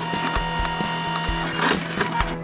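Nemonic thermal memo printer's feed motor driving a sheet of paper out of its slot, a steady whine for about a second and a half, then a short sharp snap as the sheet is cut off. Background music plays underneath.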